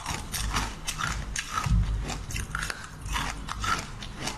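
Close-up chewing and biting of jelly candy: a quick, irregular run of sharp, crisp clicking crunches, with a heavier bite a little under halfway through.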